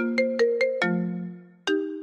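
iPhone ringtone for an incoming call: a quick melody of short plucked notes over held lower notes, settling on a low note that fades out, then starting over near the end.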